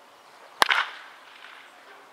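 A baseball bat hitting a pitched ball once, about half a second in: one sharp crack with a short ring after it.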